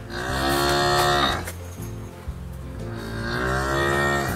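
A water buffalo mooing twice in long, loud calls, each dropping in pitch as it ends. The first starts at once; the second starts about three seconds in and carries on to the end.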